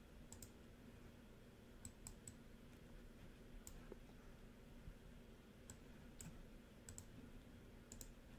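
Faint, sharp clicks of a computer mouse, about a dozen scattered through otherwise near silence, some coming in quick pairs.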